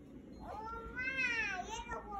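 A small boy's high, drawn-out sing-song call, rising and then falling in pitch over more than a second: a child stall-keeper calling out to passers-by to come shopping.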